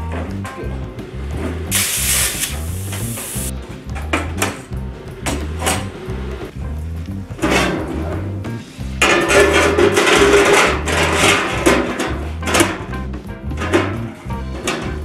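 Background music with a steady, repeating bass beat, with short bursts of workshop noise over it.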